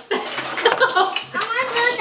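Excited children's voices and squeals mixed with the clatter of wooden building blocks being snatched up and knocked together on a wooden table.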